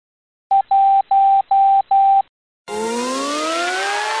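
Intro sound effects: five electronic beeps at one pitch, thin like a tone over a telephone line, the first short and the next four about a third of a second each. After a short gap a synthesized riser begins, several tones gliding slowly upward together.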